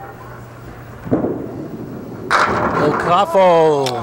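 A candlepin bowling ball rolls down the wooden lane and crashes into the pins about two seconds in, a nine-pin result. Near the end a voice calls out in one long falling cry.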